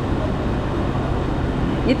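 Steady outdoor street ambience: a low traffic rumble under faint background chatter, with a nearby voice speaking at the very end.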